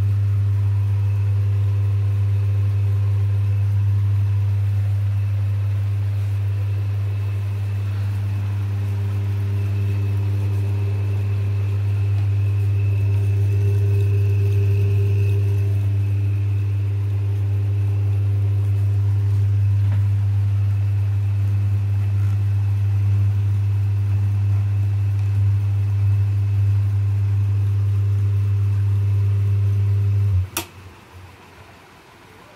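Electric meat slicer running: a steady, deep motor hum with a faint high whine above it.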